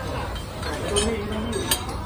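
Ceramic tableware clinking: a faint clink about halfway and a sharp, ringing clink near the end, over voices in the background.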